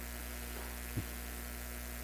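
Steady low electrical mains hum in the amplified microphone system, with one faint low bump about a second in.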